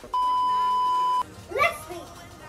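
A steady electronic test-tone beep near 1 kHz, held for about a second and cut off sharply: the bars-and-tone sound laid over a colour-bars edit effect. A child's short exclamation follows near the end.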